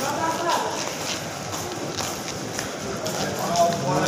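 Footsteps on a hard tiled floor at walking pace, about two to three steps a second, over a murmur of voices.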